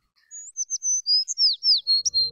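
Birdsong played back in a music video's soundtrack: a quick string of short, high whistled chirps, several of them sliding downward.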